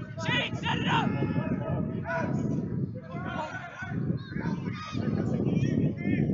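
Distant shouted calls from the lacrosse field come and go over a steady low rumble of breath and wind noise on the commentators' open microphone.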